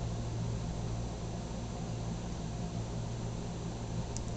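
A steady low hum with an even hiss underneath, unchanging throughout.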